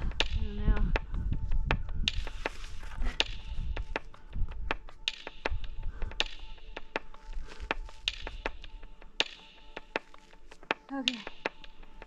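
Scattered sharp clicks and taps of a climber's hands and shoes on a granite slab, with soft breaths between them.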